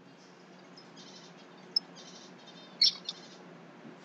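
Faint high bird chirps in short scattered bursts over quiet room hiss, with a sharper chirp just before three seconds in.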